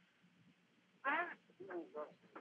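A person's voice heard over a telephone line: after about a second of near silence, brief wordless vocal sounds with a bending pitch.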